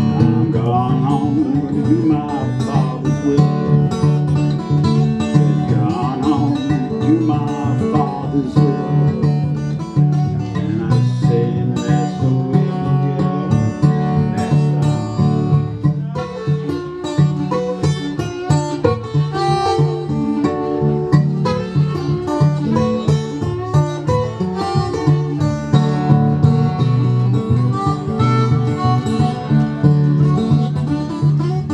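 Fingerpicked steel-string acoustic guitar playing country blues, with a harmonica joining partway through.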